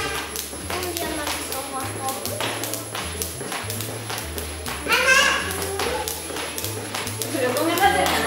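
Background music with a steady bass line, over the even, rhythmic slap of two jump ropes hitting a tile floor as two people skip. A voice rises briefly about five seconds in.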